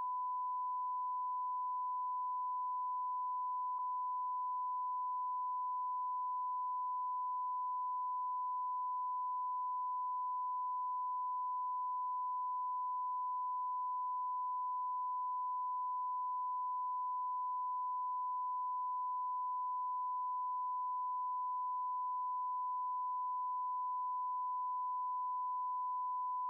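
Steady single-pitch reference tone, a pure sine beep held unbroken at a constant level, marking the end of the transmission. A faint tick sounds about four seconds in.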